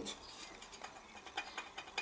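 Faint, scattered light clicks and taps of a china plate being handled on a metal workbench.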